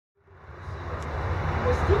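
Steady low rumble and hiss of background noise fading in from silence over the first second, with a voice beginning near the end.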